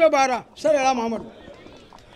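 A man speaking into a handheld microphone: two short phrases in the first second, then a pause.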